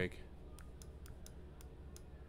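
A handful of faint, separate clicks from computer controls, spaced irregularly, over a steady low electrical hum.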